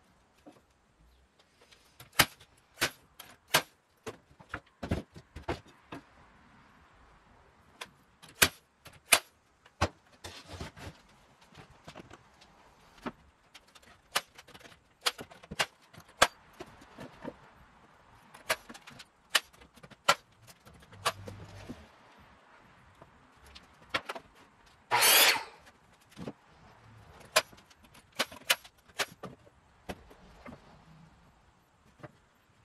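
Cordless brad nailer shooting brads into cedar fence pickets: a string of sharp snaps at uneven intervals, with a louder half-second rush of noise about 25 seconds in.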